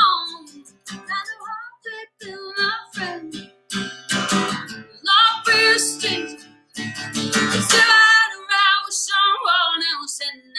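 A woman singing a song to her own strummed acoustic guitar.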